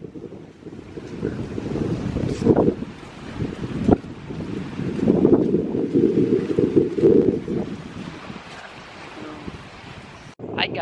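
Wind buffeting the camera microphone in gusts that rise and fall, strongest past the middle. There are two brief knocks a couple of seconds in.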